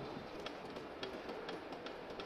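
Faint steady background hum of a station platform, with a few soft ticks.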